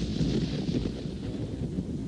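Storm ambience: steady rain with a low rolling rumble of thunder.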